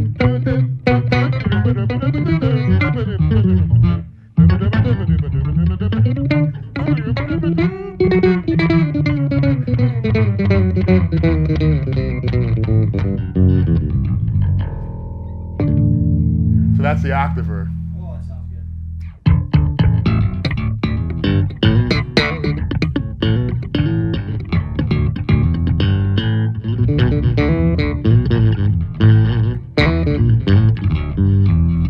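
Electric bass played through a Blackstar Unity Elite U700H bass head and U115C cabinet. The solo line opens with notes that glide up and down in pitch, holds a few long notes just past the middle, then breaks into a fast run of short plucked notes.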